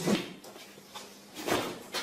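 A brief scraping swish about one and a half seconds in, with a faint knock just before it, as a long wooden stick is swung and handled.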